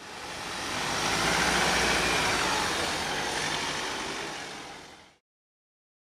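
An ambulance van driving past without a siren: engine and tyre noise swell over the first second or so, hold, then fade and cut off abruptly about five seconds in.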